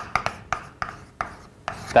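Chalk writing on a blackboard: a quick, irregular run of short scratchy strokes and taps as a word is written.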